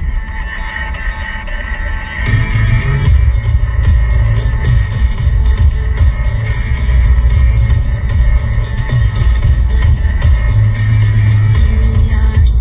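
Music playing on the car radio inside the cabin: held chord-like tones for about the first two seconds, then drums and a full band come in and carry on with a steady beat.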